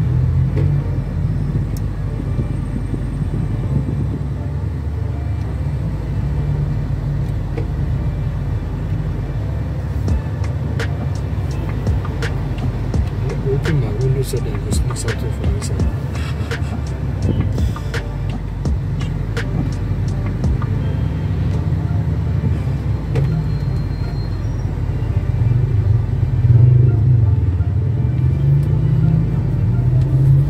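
Steady low rumble of a car's engine and tyres heard from inside the cabin while driving, growing louder over the last few seconds as it speeds up. Scattered sharp clicks come through the middle of it.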